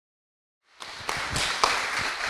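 Silence, then audience applause that starts abruptly a little under a second in: a crowd of hands clapping irregularly.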